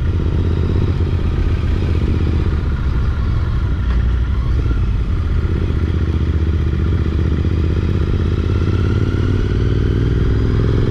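Motorcycle engine running steadily at low road speed, heard from the rider's seat.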